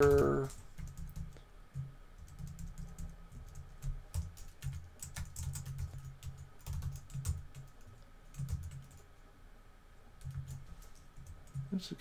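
Typing on a computer keyboard: irregular runs of key clicks with short pauses.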